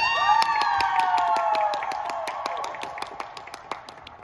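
A few people clapping and whooping in a cheer. The whoops rise at once and then sag slowly over about two seconds, and the clapping thins out near the end.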